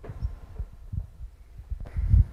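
Microphone handling noise: a few soft, irregular low thumps as a headset microphone is touched near the wearer's ear, over quiet room tone.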